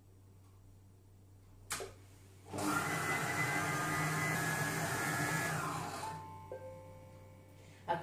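Monsieur Cuisine Connect food processor running at speed 5, its blades mixing the dry cake ingredients (flour, cocoa, sugar) in the bowl. A click comes shortly before the motor starts about two and a half seconds in; it runs steadily for about three seconds, then winds down.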